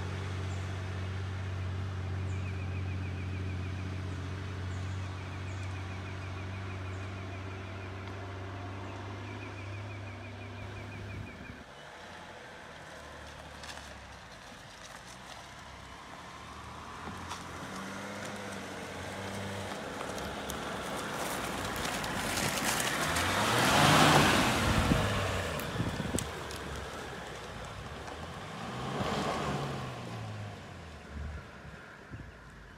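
An old Toyota Land Cruiser HJ45's diesel engine running steadily for the first ten seconds or so. Then a second four-wheel drive climbs the dirt track, its engine revving up and down, growing loudest about two-thirds of the way through as it comes close, with another swell near the end.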